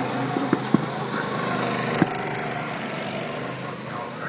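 Small go-kart engines running as karts drive around the track, a steady buzzing drone that eases off slightly toward the end, with a few sharp clicks in the first two seconds.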